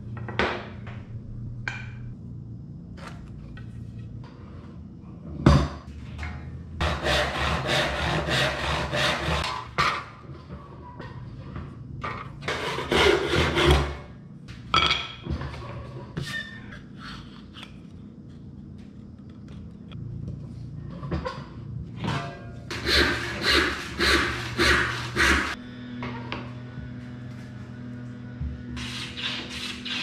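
Hand saw cutting a walnut board in runs of quick back-and-forth strokes, about three a second, with pauses between the runs; near the end a hand plane takes strokes along the wood. Background music runs underneath.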